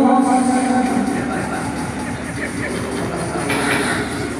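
A man singing into a microphone, holding one long note for about the first second, over a steady noisy background.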